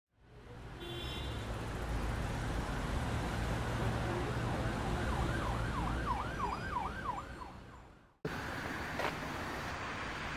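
Road traffic rumble with an emergency-vehicle siren yelping in rapid rising-and-falling sweeps, about three a second, through the middle. The sound fades in, fades out and cuts off, followed by a steady hiss with one click.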